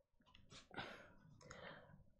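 Near silence with a few faint clicks and short scratches of a stylus against an interactive display screen.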